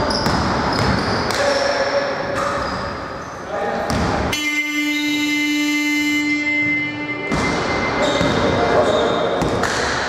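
Scoreboard buzzer ending the basketball period: one steady buzzing tone starting about four seconds in and lasting about three seconds. Before and after it, a ball bouncing on a hardwood court and players' voices in an echoing gym.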